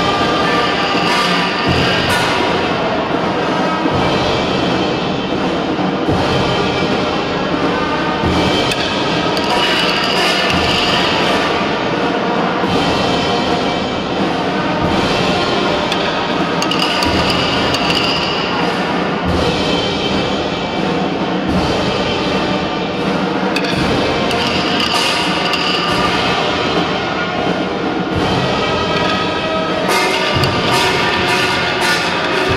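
Brass band playing a slow march, with sustained brass notes over a bass drum beating about every two seconds.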